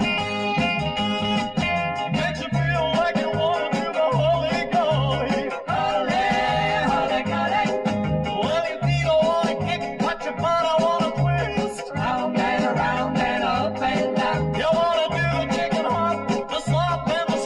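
Upbeat band music with guitar over a steady, evenly repeating bass beat.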